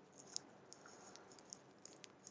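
Faint, irregular clicks of keys on a computer keyboard as a command line is edited, the sharpest about a third of a second in.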